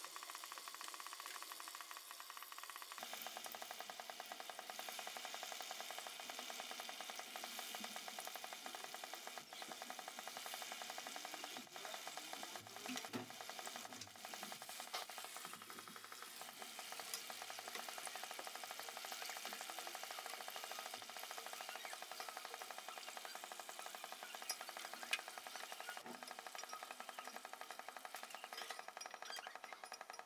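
Pakoras deep-frying in hot oil in a metal karahi: a steady sizzle, with a couple of sharp clinks from the metal slotted skimmer against the pan near the end.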